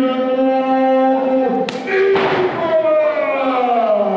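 A ring announcer's voice over the arena PA, drawing out a fighter's name in two long held calls, the first steady and the second falling in pitch.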